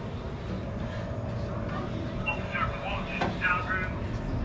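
Steady low rumble with a faint steady hum running under it, and indistinct voices coming in about halfway through.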